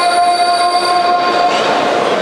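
One long held sung note with a strong, steady pitch that stops about one and a half seconds in, giving way to a steady rushing noise.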